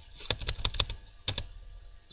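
Computer keyboard keys clicking: a quick run of keystrokes in the first second, then two more a moment later.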